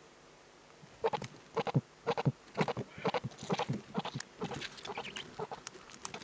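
Eurasian eagle owls calling at the nest during a food delivery: a rapid, irregular run of short calls starting about a second in and going on for about five seconds.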